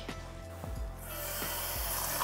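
Kitchen tap turned on about a second in, water running in a steady hiss, with a few light knocks of the ceramic bowl being handled before it.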